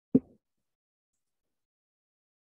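A single brief low thump, followed by dead silence.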